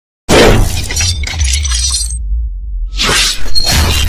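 Intro sound effects: a sudden glass-shattering crash over a deep low rumble, followed by a second crash about three seconds in.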